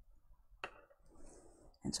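Faint scratch of a watercolour pencil drawn across smooth hot-pressed watercolour paper, with one sharp click about half a second in. A woman starts speaking near the end.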